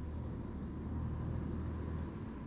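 A car approaching and passing close by: a low, steady engine and tyre rumble that grows a little louder.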